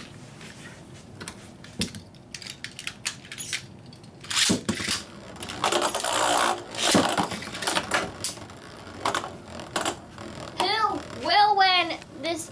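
Metal Beyblade spinning tops launched into a clear plastic stadium about four seconds in, then spinning and clattering against each other and the stadium walls with sharp metallic clicks and clashes. A child's voice comes in near the end.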